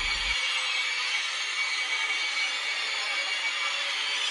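A steady hissing, static-like sound effect in the end-screen soundtrack. The deep bass of the music before it cuts off abruptly just after the start, leaving only the hiss.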